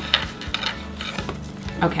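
Light clicks, taps and rustles of a cardboard toy box with a fold-out pop-up display being handled.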